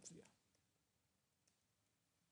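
Near silence with a faint computer keyboard click or two as text is typed.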